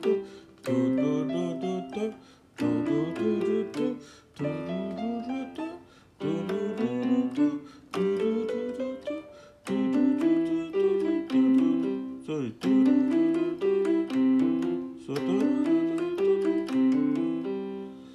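Digital keyboard with a piano voice playing a fingering exercise with both hands: quick stepwise runs of notes, repeated in phrases of two to three seconds with brief breaks between them.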